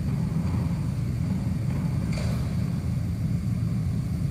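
A steady low rumble with no voice in it.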